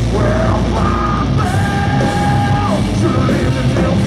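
Live heavy metal band playing: electric guitars, bass guitar and drums, with the vocalist yelling into the microphone and holding one long scream from about a second and a half in.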